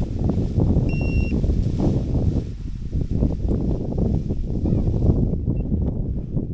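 Wind buffeting the microphone on an exposed hilltop, a rough low rumble that surges and eases with the gusts. A single short electronic beep sounds about a second in.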